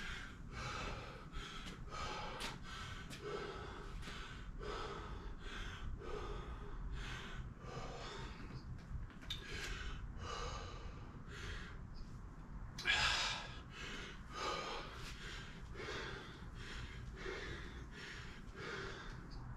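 A man panting hard, winded after a set of kettlebell swings: quick heavy breaths in and out at roughly one a second, with one louder, longer exhale about thirteen seconds in.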